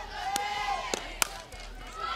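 A softball bat meeting a pitched ball in a single sharp crack about a second in, for a ground ball. A drawn-out voice from the crowd sounds in the first half, over a low steady hum.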